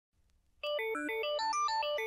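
Synthesizer playing a fast, repeating arpeggio of bright, clean notes, about seven a second, starting just over half a second in: the opening of an 80s synth-rock song.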